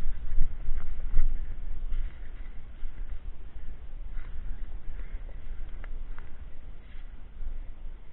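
Mountain bike rolling fast over a rough, leaf-covered dirt trail, with knocks and rattles from the bike, loudest in the first second or so. After that a steady low rumble of wind on the microphone continues, with a few scattered clicks.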